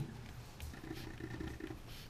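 Faint scratching of a pen writing on paper over a low, steady room hum.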